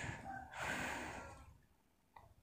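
A faint, breathy exhale close to the microphone, cut off about three quarters of the way through.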